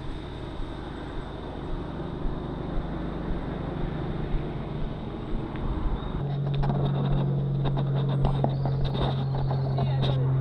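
Wind rushing over an action camera and tyre noise from a bicycle riding along a paved lane. About six seconds in a steady low hum comes in and becomes the loudest sound, with scattered sharp clicks over it.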